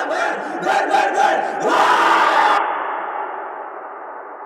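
A group of young men shouting together in a huddle, a team cheer with several sharp accents. It cuts off abruptly about two and a half seconds in, leaving a long echoing tail that slowly fades.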